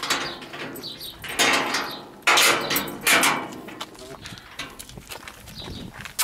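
A sheet-steel gate being unlocked and opened: padlock clatter, then two loud scraping drags of the metal gate, the second a little over two seconds in.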